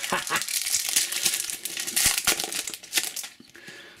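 Foil wrapper of a Topps Slam Attax trading card booster pack crinkling as it is handled and opened by hand, a dense crackle that fades out after about three seconds.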